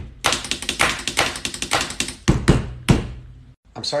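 Pencil rapidly scribbling and tapping on paper on a table: a quick run of sharp taps for about two seconds, then a few louder, separate strikes near the end.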